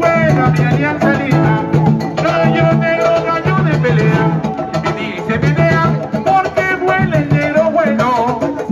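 Live Latin band music led by electric guitar over a steady bass line and percussion, played loud through a street loudspeaker.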